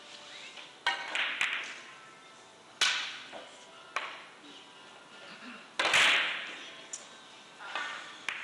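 A series of sharp clicks from carom billiard balls, as the cue strikes the ball and the balls knock into each other and the cushions. Each click rings briefly in a large hall, and the loudest comes about six seconds in.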